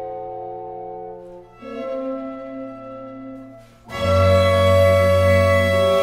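A chamber octet of clarinet, bassoon, horn, string quartet and double bass playing held chords. A softer chord changes about a second and a half in, and about four seconds in the ensemble comes in with a much louder, full chord over a strong bass.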